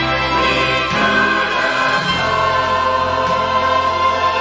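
Choir singing with instrumental accompaniment: held chords, the bass note shifting about a second in.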